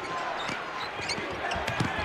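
A basketball dribbled on a hardwood court, heard as a few low thumps mostly in the second half, over the steady noise of an arena crowd.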